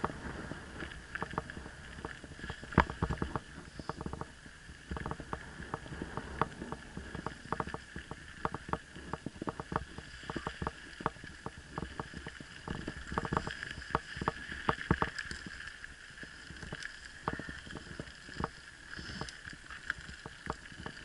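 Mountain bike rolling fast over a rough gravel and dirt track, rattling with frequent irregular knocks as it jolts over the stones. One sharper knock comes about three seconds in.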